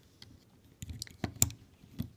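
Faint scattered clicks and taps of a crochet hook and rubber loom bands against a plastic loom's pegs as the bands are loosened off the pegs. The clicks are a handful of short ones, most around the middle.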